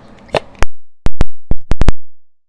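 A person gulping soda from a plastic bottle close to the microphone: a quick run of about six loud, sharp clicks with dead silence between them.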